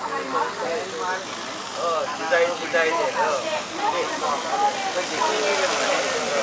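People talking, with the rotor whir of a large agricultural spray drone lifting off behind them. The whir grows louder near the end.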